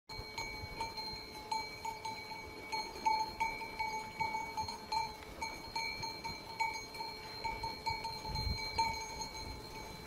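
Bells on grazing livestock ringing, clinking irregularly and overlapping as the animals move.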